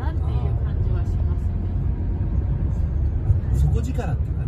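Steady low rumble of a Toyota HiAce van's engine and tyres on the road, heard inside the cabin while driving, with low voices in the cabin early on.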